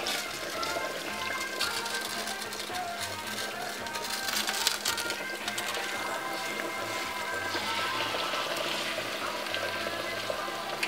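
Breaded minced-meat cutlets sizzling and crackling in hot oil in a non-stick frying pan with sliced onions, with background music playing over it.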